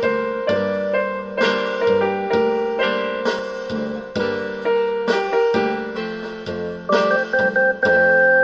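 Digital keyboard with a piano sound playing a slow rock ballad: a sustained chord struck about once a second and left to ring and fade, with a few quicker, higher notes about seven seconds in.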